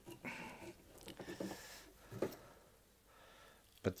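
Faint handling sounds as a one-handed bar clamp is released and an aluminium bar is lifted off a wooden block, with a single sharp click about two seconds in.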